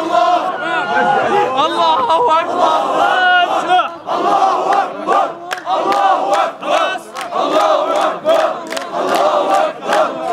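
A large crowd of mourners shouting and chanting together in Arabic, many men's voices at once. From about halfway, sharp regular beats, roughly three a second, keep time under the chanting.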